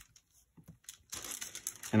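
Hands rolling a clay coil back and forth on a paper sheet, the paper faintly crinkling and rustling under them, starting about a second in.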